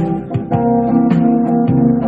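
Instrumental music: acoustic guitar picking a run of single plucked notes between the sung lines, with no voice.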